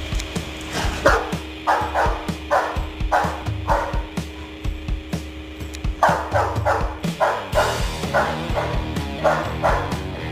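Doberman barking in runs of short, repeated barks, over background music with a steady beat.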